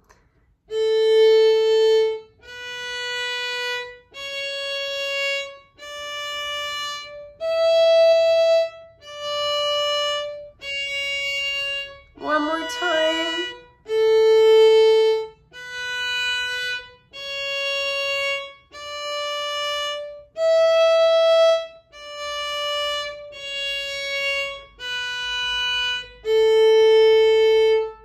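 Violin played slowly with a separate bow stroke for each note, about one note every one and a half seconds: a scale on the A string from open A up through B, C sharp and D to the fourth-finger E and back down, played twice. A short spoken remark falls about halfway.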